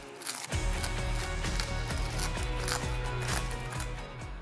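Background music over the crisp crackle of seasoned toasted seaweed (nori) being torn and crumbled by hand.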